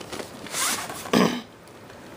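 Plastic VHS clamshell case being handled and swung open, with short sliding rubs of hand on plastic. The louder rub comes just after a second in.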